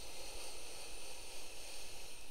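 One long, steady inhale through the nose as a man smells a bottle of beard oil held to his face.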